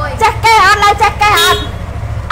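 A woman speaking, with a steady low hum underneath.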